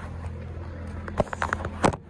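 Steady low hum of an engine running, with a quick run of sharp knocks and clicks in the second half, the last one the loudest.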